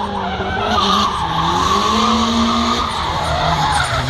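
A drift car's engine at high revs, its pitch falling and climbing again several times with the throttle, over the steady hiss of the tyres skidding sideways.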